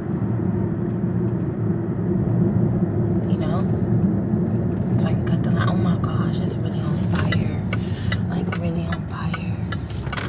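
Steady low rumble of a car moving in slow traffic, heard inside the cabin. Faint short clicks and high blips come in over it in the second half.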